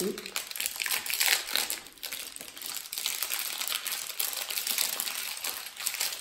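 Plastic wrapper of a crunchy caramel seed bar crinkling and crackling as it is worked open by hand.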